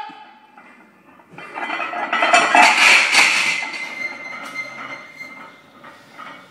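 Loaded barbell and steel plates clanking and rattling in a power rack, most likely as the bar is set back on the hooks after the squat, with a thin ring lingering after. It starts about a second and a half in and fades toward the end.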